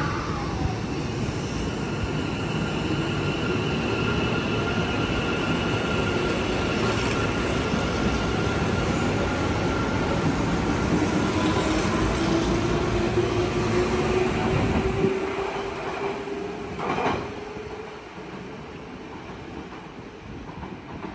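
Electric commuter train pulling along a station platform: a heavy rumble of wheels on rail, with the motors' whine slowly rising in pitch as it gathers speed. About three-quarters of the way through the rumble drops away, followed by a short sharp clank.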